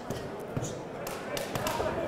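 Boxing gloves landing on a fighter's body in a close-range exchange: several short, separate thuds spread over two seconds.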